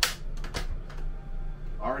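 RV refrigerator's freezer door being unlatched and pulled open: a sharp click, then a few softer clicks and knocks as the door swings out, over a steady low hum.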